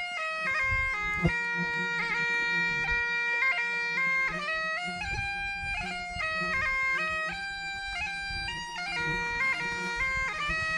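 Bagpipes playing a melody: the chanter steps between held notes over a steady low drone.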